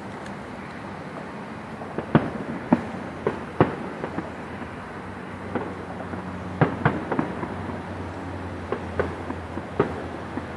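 Distant aerial fireworks shells bursting in a series of sharp bangs, bunched a couple of seconds in and again over the second half, over a steady low hum.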